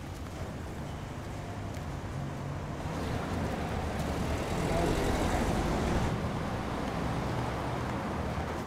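Street traffic noise: a steady rumble of cars on the road, swelling as a vehicle passes about five seconds in, then easing.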